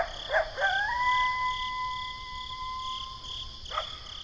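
Crickets chirping in a steady pulse. Over them an animal gives a few short yips, then one long, steady howl lasting nearly three seconds, and one more short yip near the end.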